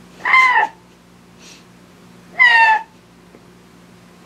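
A woman's helpless giggling: two short, high-pitched squeaks of laughter about two seconds apart, each bending slightly down in pitch, with faint wheezy breaths between them.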